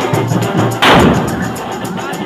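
A single loud firecracker bang a little under a second in, trailing off over about half a second, over background music with a steady beat.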